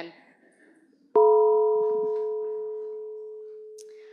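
A single struck bell-like chime about a second in, ringing with a few clear overtones that die away first while the lowest tone fades slowly over about three seconds. It works as a sound cue marking a scene change.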